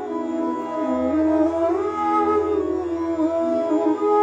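Bansuri (bamboo flute) playing a slow melodic phrase in raga Bihag, its notes gliding into one another, over a steady tanpura-style drone.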